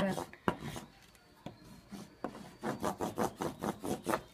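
A block of Howies hockey stick wax rubbed over the white cloth tape on a hockey stick blade. There are a few sharp knocks at first, then quick rasping back-and-forth strokes, about five a second, in the second half.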